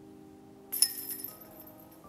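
A putted golf disc strikes the hanging chains of a metal disc golf basket: one sharp metallic clink about two-thirds of a second in, then the chains jangle and ring for about half a second.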